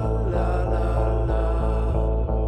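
Playback of a rough mix of the band's own experimental rock song's ending: layered, church-like sung vocals held over a steady low bass-and-drum pulse about three times a second.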